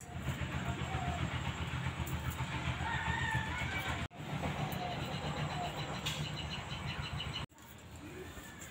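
A low, steady rumble like a running engine or motor, with a few faint whistling calls above it. The sound breaks off sharply twice, once about halfway and once near the end.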